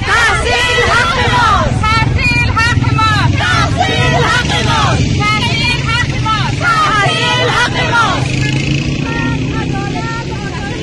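A group of women chanting and shouting protest slogans in Dari, high voices rising and falling in repeated phrases about a second apart. A steady low rumble runs beneath.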